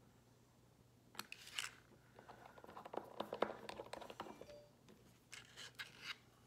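Light plastic clicks and scrapes of a nail polish bottle and a plastic nail swatch wheel being handled, as the brush cap goes back onto the bottle. A couple of clicks about a second in, a busy run of small clicks in the middle, and a few more near the end.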